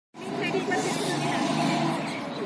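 People's voices talking, starting abruptly and continuing as a fairly loud, steady mix.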